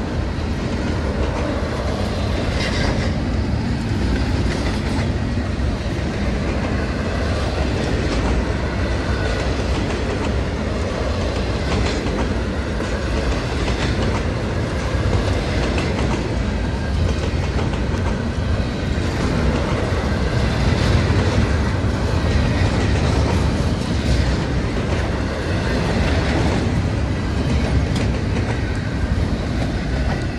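Double-stack container train rolling past close by: a steady rumble of steel wheels on rail, with frequent clicks as the wheels cross rail joints.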